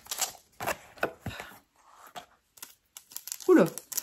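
Scattered clicks and crinkles of a small plastic packet of wool needles being handled, mostly in the first second and a half. A short voice sound comes near the end.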